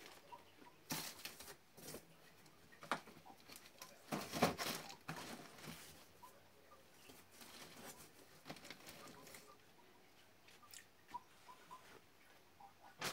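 Rustling and light knocks as clothes and cardboard snack boxes are handled and packed into a cardboard shipping box, in scattered bursts, the loudest about four and a half seconds in.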